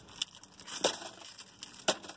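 Plastic wrapper being handled, crinkling in scattered short crackles and clicks, with a sharp click just before the end.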